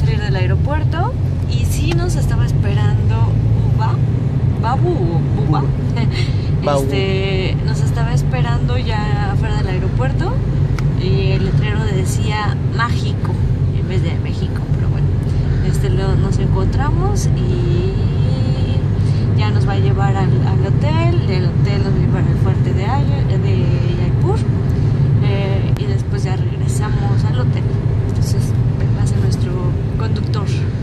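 Steady road and engine rumble inside a moving car's cabin, with a woman talking over it.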